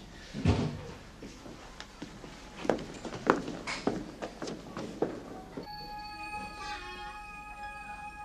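A heavy low thud, then a few irregular sharp knocks and thuds. After about five and a half seconds, background music with held tones comes in.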